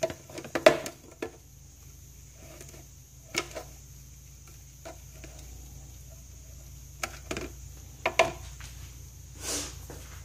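Scattered footsteps, knocks and clicks of a person moving about a small room and handling things, with a brief rustle near the end.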